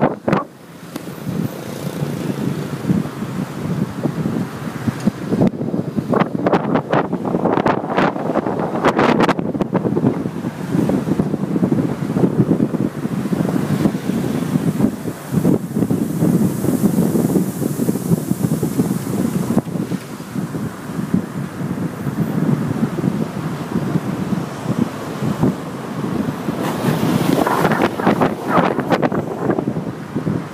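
Wind buffeting the microphone over the steady rumble of a car driving along a road, with stronger gusts a few seconds in and again near the end.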